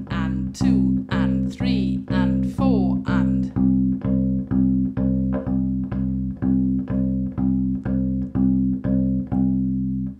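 A cheap fretted bass ukulele plucking one low note over and over in even, straight quavers, about two notes a second, each note the same length.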